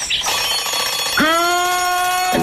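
Alarm-clock bell ringing as a sound effect at the start of a TV programme's opening jingle. About a second in, a held musical note joins it, sliding up into pitch before it steadies.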